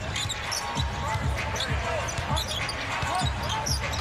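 A basketball dribbled on a hardwood arena court, a run of low bounces about two a second, under steady crowd noise.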